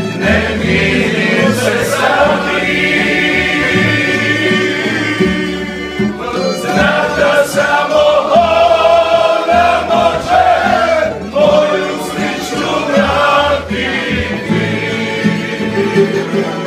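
Live acoustic folk-pop song: several voices singing together over strummed acoustic guitars and a plucked double bass.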